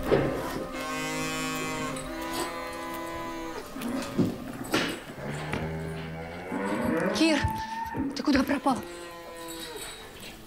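Dairy cows mooing in a cowshed: several long, drawn-out calls, some overlapping.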